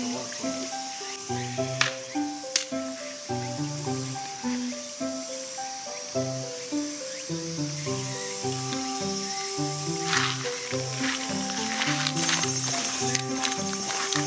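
Background music: a melody of held notes over a moving bass line.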